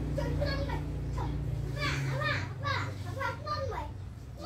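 A young child's high-pitched voice talking and babbling in short phrases, over a steady low hum that fades partway through.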